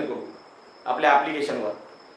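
A man's voice says a short phrase in the middle, between two brief pauses. Under it a faint, steady high-pitched tone can be heard.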